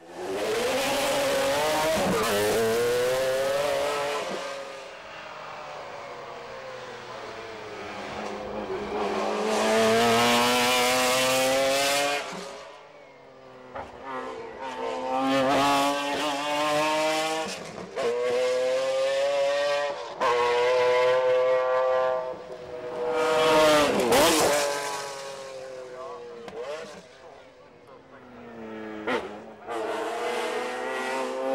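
The 1995 McLaren F1 GTR's naturally aspirated 6.1-litre BMW S70/2 V12 at full throttle, its pitch climbing through each gear and dropping at the shifts and lifts, with several loud swells as the car goes by and a sharp drop in pitch as it passes.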